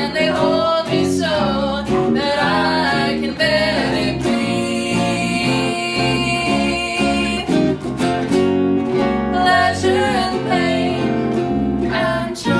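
A live band plays a song: a woman sings the lead over a hollow-body electric guitar and an electric bass, with the bass notes stepping along under the chords.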